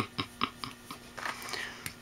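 A man's soft chuckle: a run of short, breathy laughs, about four or five a second, dying away, followed by a faint rustle and a single small click near the end.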